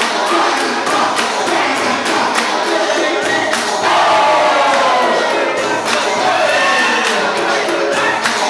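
Crowd of young spectators shouting and cheering over music, swelling louder about four seconds in.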